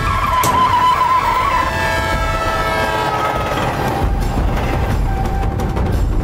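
Loud low rumble of a tractor under several long, steady high screeching tones that hold for about three seconds. A wavering whistle-like tone runs through the first second and a half, and a few sharp knocks come in the last two seconds.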